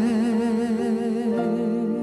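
A male singer holds one long note with wide vibrato while steady keyboard chords play underneath, in a live ballad performance.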